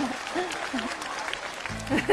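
Theatre audience laughing and clapping, a patter of many hands with a few laughing voices.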